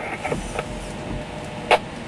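Low rumble of a vehicle cabin with faint creaks, and one sharp click about three-quarters of the way through.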